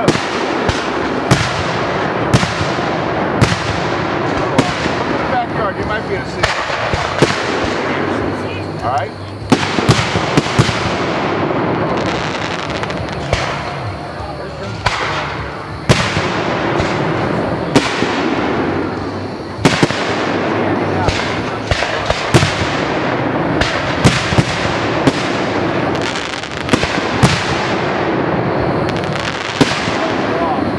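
Aerial firework shells bursting in quick succession during a display, a sharp bang every second or so over a continuous wash of noise between them.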